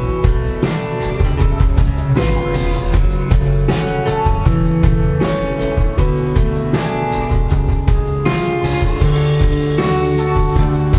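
A live band playing a song with a steady beat: acoustic guitar strumming over a drum kit.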